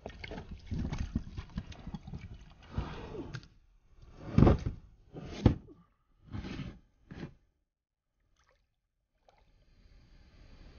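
An old tire on a steel rim being hauled out of the water and onto a plastic kayak, scraping and knocking against the hull. There are two heavy thumps about four and a half and five and a half seconds in, then a few lighter knocks before it goes nearly silent for the last couple of seconds.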